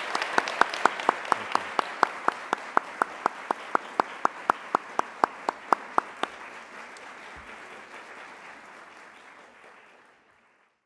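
Audience applauding, with one person's loud, evenly spaced claps standing out at about four a second for the first six seconds. The applause then fades out toward the end.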